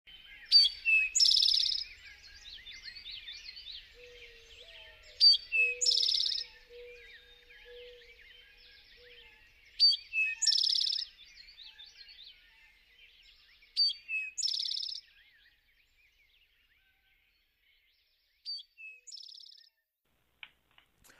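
Birdsong: one bird repeats a short high phrase, a sharp note followed by a buzzy trill, about every four to five seconds over a chorus of smaller chirps from other birds. A fainter, lower call repeats for a few seconds in the first half, and the chorus fades away about three quarters of the way through, leaving one last quieter phrase.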